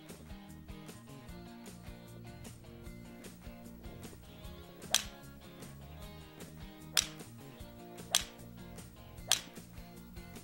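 Four sharp cracks of a six-iron striking golf balls off a practice mat, spaced one to two seconds apart, over steady background music.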